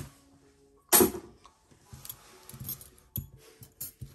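Metal costume-jewelry bangles clinking and rattling as they are handled, with one loud sharp clink about a second in and lighter clicks after it.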